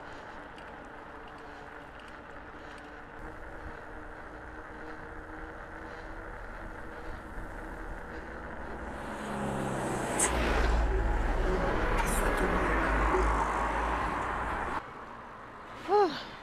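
Steady road and wind noise of a moving bicycle, then a motor vehicle passes close by, loud for about five seconds with a heavy low rumble, before the sound cuts off abruptly.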